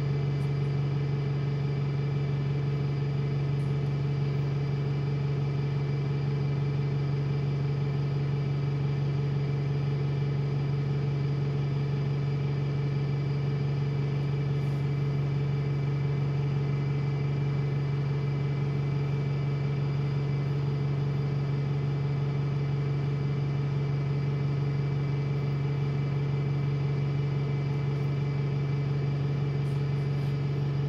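Wright StreetLite single-decker bus standing still with its engine idling, heard from inside the passenger saloon: a steady low hum that does not change.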